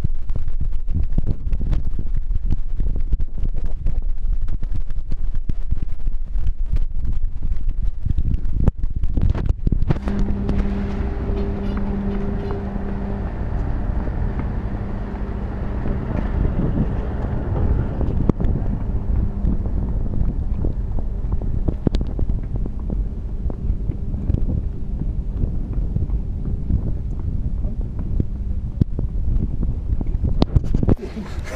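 Wind buffeting a moving camera's microphone, with frequent knocks from jostling. About ten seconds in, a steady engine-like hum comes in, strongest for a few seconds, then carries on more faintly until near the end.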